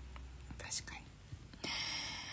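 A quiet pause in a woman's talk with faint breathy sounds, ending in a breath about one and a half seconds in.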